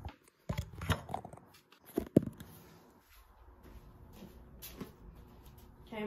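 A handful of sharp knocks and clatters from objects being handled, loudest in a pair about two seconds in, followed by faint rustling.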